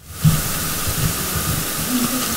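Steady loud microphone hiss as the recording's audio comes on, with irregular low thumps underneath.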